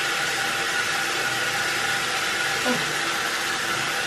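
Bathroom tap running steadily into a sink, a constant rush of water.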